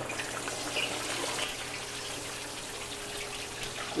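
Whole red snapper deep-frying in a large pot of hot oil: a steady bubbling sizzle with fine crackles, starting as the fish goes in. The oil foams up around the fish without spitting, the sign that it is hot enough for frying.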